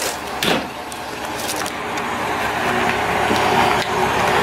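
Road traffic noise, a vehicle growing louder as it approaches, with a couple of short knocks just after the start.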